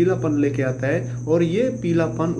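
A man talking in Hindi over a steady low hum and a continuous high-pitched whine.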